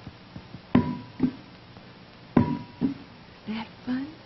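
A rubber ball let go and bounced on a hard studio floor twice, about a second and a half apart. Each bounce is a sharp knock with a short ringing ping, followed by a softer slap as the ball is caught in the hands.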